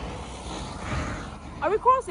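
Road traffic noise along a busy city street, a steady low rumble that swells briefly about a second in, with a voice starting near the end.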